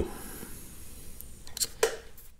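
Faint room tone with two brief light clicks near the end, from a depth micrometer being handled and lifted off the injection pump housing.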